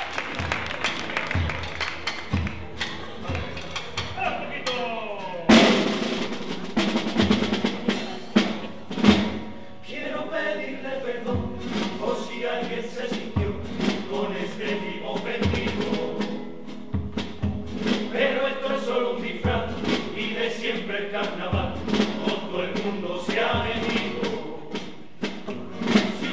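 A chirigota carnival chorus singing together in Spanish, accompanied by drums keeping the beat, with a loud hit about five and a half seconds in.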